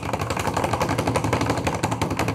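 A suspense sound effect for a big reveal: a fast, evenly repeating drumroll-like rattle.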